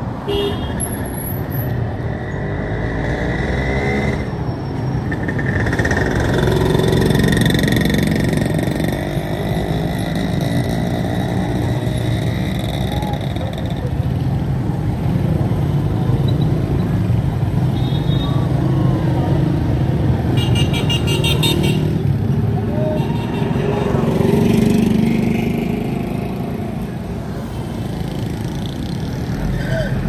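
Busy street traffic: motorcycles and cars running close by, a steady engine rumble with a few held higher tones passing through.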